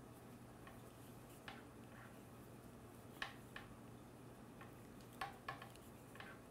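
Knitting needles clicking faintly as stitches are worked, a few irregular light clicks over quiet room tone with a steady low hum.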